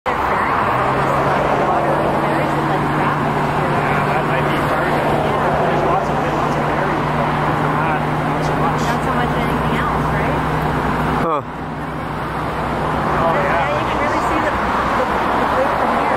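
Several people's voices talking indistinctly over a steady low hum of a vehicle engine running, with road noise. The hum stops a couple of seconds before the end, and there is a brief sudden break about eleven seconds in.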